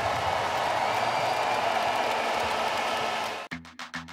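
Large arena crowd cheering and applauding in a steady wash of noise. About three and a half seconds in it cuts off abruptly and a percussive music track with a fast, even beat starts.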